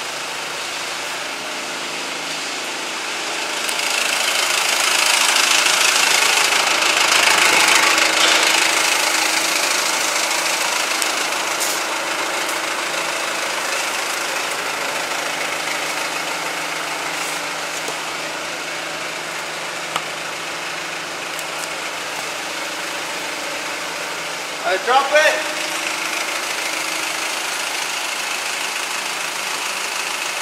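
Forklift engine running steadily. It revs up and grows louder and brighter for several seconds from about four seconds in while the forks are worked, then settles back. There is a single click later on, and a brief run of loud, pitched squeaks about five seconds before the end.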